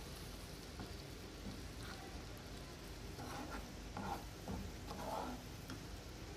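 Tomato masala with ground coconut paste sizzling faintly in a non-stick pan as a spatula stirs it through.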